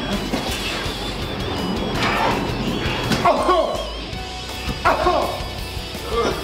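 Background music, with a young Belgian Malinois giving a few short barks about two, three and five seconds in, during bite work on a leather bite pillow.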